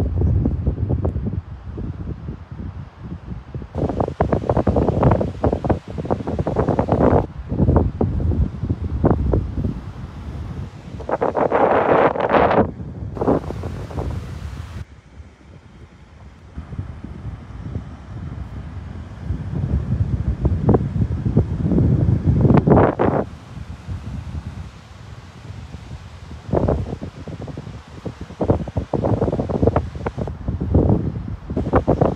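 Wind buffeting a phone's microphone in irregular gusts, a low rumbling noise that surges and falls every few seconds.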